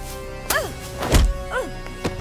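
Film fight sound effects over a steady music score: a sharp hit with a short falling cry about half a second in, a heavy punch-impact thud a little after a second, then another short falling cry.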